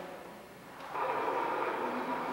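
Held musical notes in steady chords that fade out about half a second in, then return about a second in and carry on.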